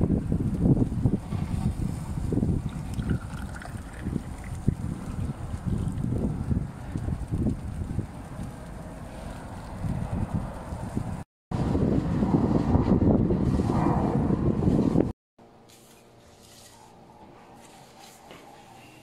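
Wind buffeting the microphone, a loud low rumble that rises and falls, briefly dropping out about two-thirds of the way in. About three seconds before the end it cuts off abruptly to faint room tone.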